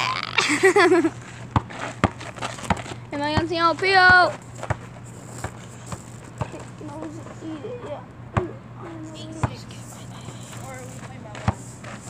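Children calling out loudly, with a basketball bouncing on a dirt court in single, sharp, irregularly spaced knocks.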